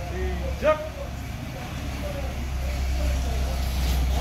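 A short shouted start command, "sijak" (Korean for "begin"), less than a second in, over a steady low rumble of a motor vehicle engine.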